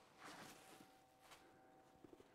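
Near silence, with a faint soft rustle of a leather handbag being handled as its opening is pulled apart by hand.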